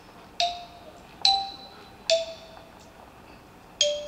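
Four single bell-like notes from tuned percussion, struck one at a time less than a second or so apart. Each rings briefly and fades, and each sits at a slightly different pitch, like a slow little melody.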